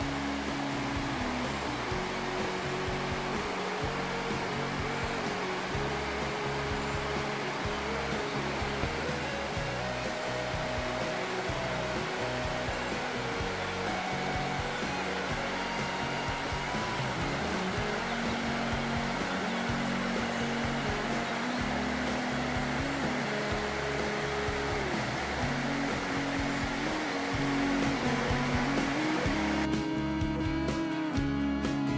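Water rushing steadily over a low river weir, under background music of slow, held notes; a plucked guitar comes in at the very end.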